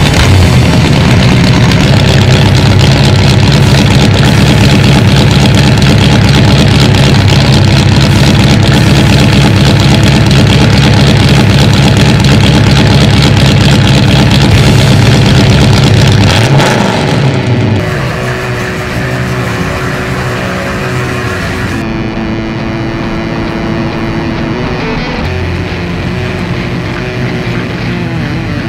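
A car engine running with a steady low rumble, mixed with music. It is loudest for the first two-thirds, then drops noticeably quieter.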